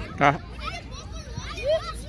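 Children shouting and calling while playing football, with one short loud shout about a quarter of a second in and a rising call near the end.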